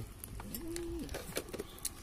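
A dove cooing once: a single short, low note that swells up and holds for under half a second, with faint scattered clicks and taps around it.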